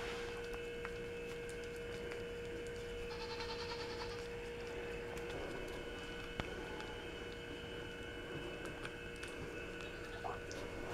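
A goat licking a salt wheel held in a hand, giving soft, scattered wet tongue clicks, over a steady electrical hum.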